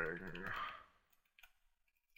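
A drawn-out spoken word trails off, then a computer keyboard is typed on, giving a few faint, quick keystroke clicks.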